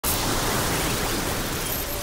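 A steady rushing noise, even from low to high, that starts abruptly.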